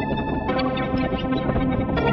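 Electronic music from the Fragment additive spectral synthesizer, sequenced in Renoise with delay and reverb added: a dense held chord of many steady tones over a busy low end. The chord changes about half a second in.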